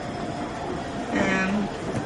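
A pause in speech filled with steady background noise, then a brief, held hesitation sound from a woman's voice a little past the middle.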